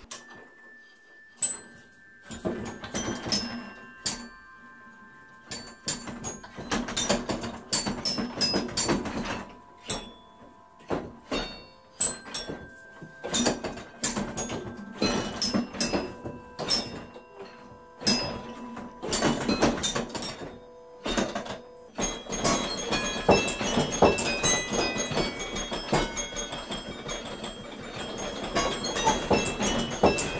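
A homemade practice carillon of loosely hung aluminum tubes, struck by small aluminum strikers from a baton keyboard, playing a tune: sharp metallic strikes each followed by ringing tones. The notes come sparsely at first and grow denser and fuller about two-thirds of the way through.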